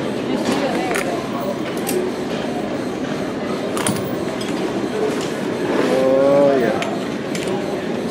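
Gym room noise with indistinct background voices and a few sharp metallic clinks from weight-machine equipment. About six seconds in there is a brief, drawn-out voice sound.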